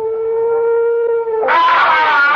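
A steady held note, a sustained tone typical of a radio-drama sound cue. About one and a half seconds in, a loud, shrill, wavering scream breaks in: the scream that sends the men looking.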